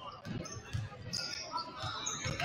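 Several basketballs being dribbled on a hardwood gym floor, overlapping bounces several times a second, with a brief sneaker squeak about a second in.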